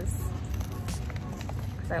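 Faint handling sounds of fingers picking at the top of a brown paper bag, with a few small clicks, over a steady low rumble.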